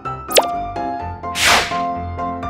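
Light background music of short keyboard-like notes, with a quick cartoon pop sound effect about a third of a second in and a whoosh about a second and a half in.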